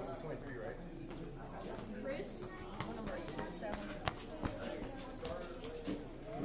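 Indistinct background chatter of several voices, with a couple of sharp knocks a little past the middle.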